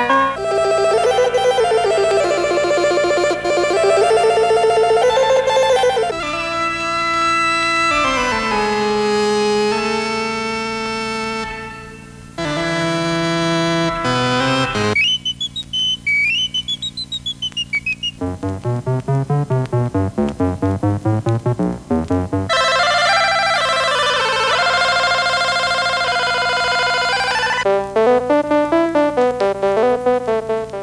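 Stylophone 350S stylus-played synthesizer running through a series of voices: held notes and chords that change every few seconds, a brief drop-out about twelve seconds in, a high note gliding up and back down in the middle, and fast repeated notes later on and again near the end.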